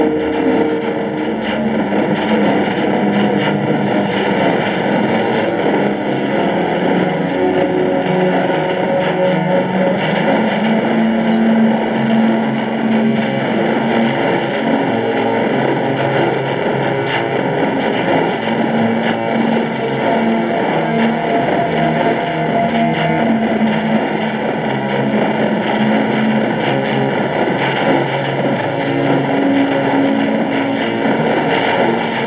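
Loud, distorted guitar music with long held notes, running without a break.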